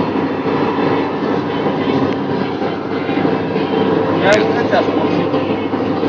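Steady rumbling hum of a moving vehicle, even throughout, with a person's voice briefly about four seconds in.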